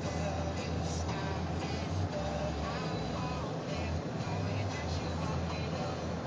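Steady engine and road rumble inside a moving car's cabin, with music playing.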